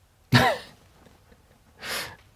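A man's brief laugh: a short voiced burst about a third of a second in, then a breathy exhale near the end.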